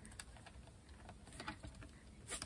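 Faint scattered clicks and light taps from handling a battery-lit plastic magnifying sheet, a few at first and a small cluster in the second half.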